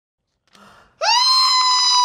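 A man's high-pitched scream that starts about a second in, slides up quickly and then holds steady on one note.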